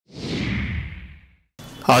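Whoosh sound effect for an intro animation: a falling swoosh over a low rumble that fades out after about a second and a half.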